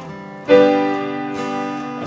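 Acoustic guitar strumming with piano accompaniment, an instrumental gap between sung lines; a loud new chord is struck about half a second in and rings on.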